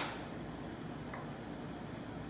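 Steady low background hum of a workshop, with one short sharp click right at the start and no other distinct sounds.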